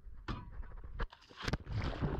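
Handling noise aboard a small boat: a low rumble with about three sharp knocks and clicks spread through the two seconds.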